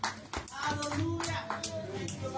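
Hand claps, a quick uneven string of them, with faint voices underneath.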